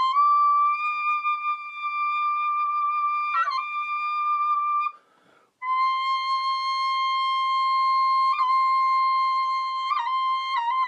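Solo recorder holding a long, steady high note with a brief pitch flicker about three and a half seconds in, then a short break and a second long note a little lower.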